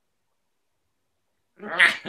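Dead silence, then about one and a half seconds in a person bursts into laughter.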